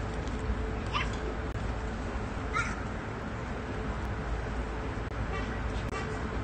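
Background ambience: a steady low rumble and hiss with a faint steady hum. It is broken by two short, high animal calls, one about a second in and one about two and a half seconds in.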